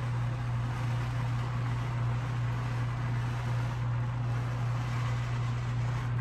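Handheld garment steamer running with its nozzle pressed right against a shirt: a steady low hum under an even hiss of steam hitting the fabric.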